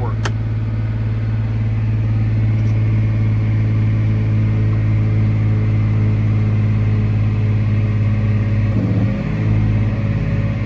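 John Deere 8330 tractor's six-cylinder diesel engine running steadily at full throttle, heard from inside the cab, while the transmission calibration sits at its stabilizing step. The engine note changes briefly about nine seconds in.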